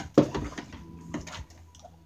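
A dog biting and mouthing a small water-filled rubber balloon that will not burst: one sharp, loud snap just after the start, then a few scattered taps and clicks that fade out about halfway through.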